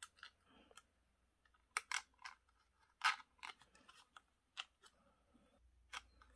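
Faint handling noise: a scatter of short clicks and crackles, the loudest about three seconds in, as the wire legs of a light sensor are pushed into the holes of a paper circuit card.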